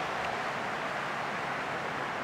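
Steady background noise of a large football stadium crowd, an even wash of sound with no single standout event.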